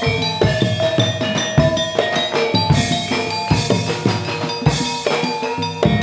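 Javanese jaranan music from a gamelan ensemble: ringing bronze metallophone tones over a steady beat of drum strokes.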